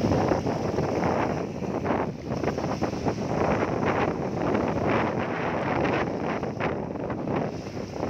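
Small sea waves breaking and washing over a shallow, weed-covered rock shelf, a steady rush of splashing and fizzing water, with wind buffeting the microphone.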